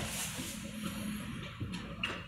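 Quiet room hiss with faint handling rustles and a couple of soft knocks as the camera and guitar are settled. No notes are played yet.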